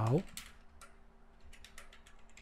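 Typing on a computer keyboard: a run of quick, light key clicks, coming faster in the second half.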